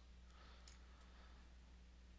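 Near silence: a faint steady low hum and hiss from the recording chain, with a faint click about two-thirds of a second in.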